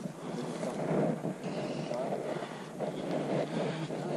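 Wind buffeting an action camera's microphone, an uneven rushing noise that swells and fades.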